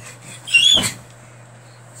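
A brief high-pitched squeak about half a second in, ending in a soft thump.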